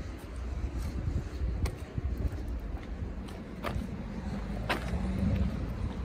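Town street traffic: a car passing on the road over a steady low rumble, with a few short sharp clicks.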